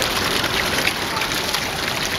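Many koi splashing and churning at the pond surface in a feeding frenzy, a steady dense splashing made of many small splashes.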